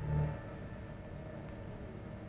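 Low rumble and hiss of an old film soundtrack with faint sustained notes of background music, and a brief louder low sound right at the start.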